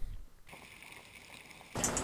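Faint steady hiss of water on an underwater camera's audio track, with no shot or other distinct event in it.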